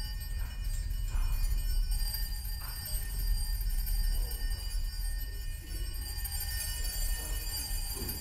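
Chamber ensemble playing a tense contemporary film score: a cluster of high sustained tones held over a low rumble.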